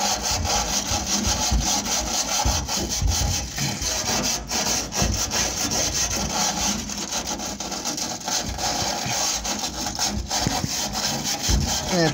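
Steel wire tube brush scrubbing over painted sheet steel inside a van's sill, a steady rasping scrape made of many quick strokes. The brush is knocking off loose, flaking paint and surface rust.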